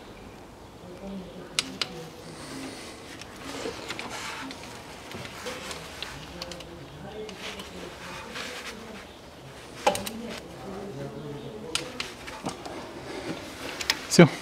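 A click-type torque wrench set to 17 Nm giving a few sharp clicks as it reaches torque on water pump bolts, over faint murmuring voices.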